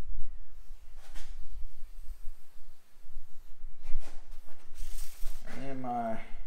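Faint scraping and handling of a marker and ruler on a plexiglass sheet as a line is drawn, over a low rumble; a man's voice murmurs briefly near the end.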